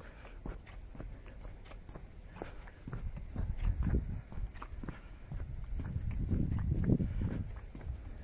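Footsteps walking across the wooden plank deck of a footbridge, a steady run of knocking steps that grow louder in the second half.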